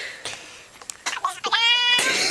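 A few scattered knocks and clicks, then a single animal cry held at a steady pitch for about half a second near the end.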